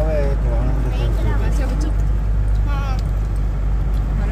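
Steady low rumble of a Mahindra Bolero SUV on the move, heard from inside the cabin, with women's and children's voices over it.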